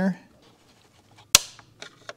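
A single sharp crack of plastic as a press-fit, glued-in piece of a Mercedes W126 instrument cluster housing pops loose under a pry tool. It sounds like breaking, but it is only the part releasing. A few faint ticks follow near the end.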